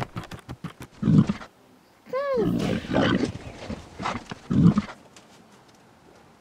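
Creature growls and a roar, a monster voice for the dragon-headed figure: rough growls about a second in, a pitched cry that rises then falls about two seconds in, and more growls near the end.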